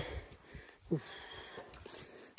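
A hiker's breathing with a short exhaled "oof" about a second in, the sound of exertion on a climb.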